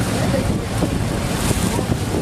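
Wind rushing and buffeting on the microphone over choppy sea, with the low steady hum of a boat motor under way beneath it.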